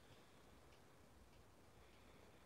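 Faint, steady ticking of a twin-bell alarm clock, a little under two ticks a second, over near silence.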